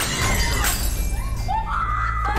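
A loud crash of something breaking, with fragments scattering, in the first half-second or so, followed by dramatic background music.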